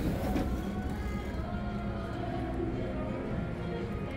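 Slot machines' electronic music and chime tones playing as held, overlapping notes, with a low hum underneath.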